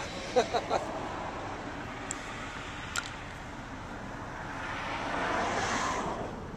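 A person laughs briefly in a few quick bursts, over steady outdoor background noise that swells up for a couple of seconds near the end.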